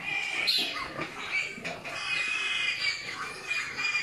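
High-pitched animal calls wavering on and off, with a sharper rising cry about half a second in.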